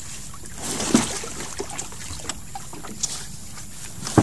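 Small wooden bangka with a bamboo outrigger being tugged and shifted by its bow, its wood giving one loud knock about a second in and a few lighter knocks after.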